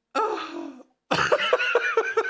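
A man laughing: a breathy burst, a short pause, then a quick run of pulsed laughs.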